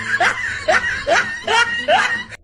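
A person laughing hard in a run of short bursts, about two a second, each one rising in pitch.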